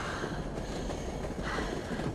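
Moving train heard from inside a carriage: a steady rumble and rattle of the rails, with a couple of hard breaths after exertion.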